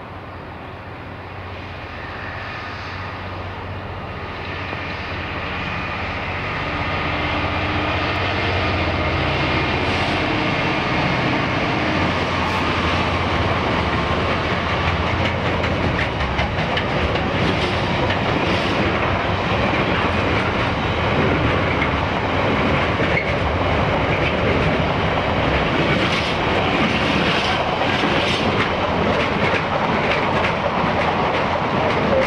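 Freightliner Class 66 diesel locomotive hauling an intermodal container train, its engine note growing louder as it approaches over the first several seconds. Container wagons then roll past with a steady wheel rumble and frequent clicks of wheels over the rail joints.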